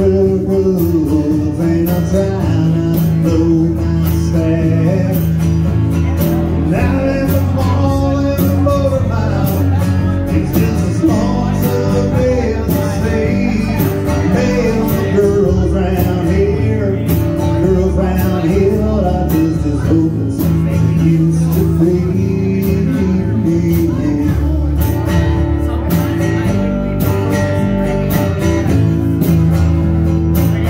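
Live band of upright bass, acoustic guitar and drum kit playing a song, with a voice singing over it. The upright bass and kit keep a steady beat under the guitar.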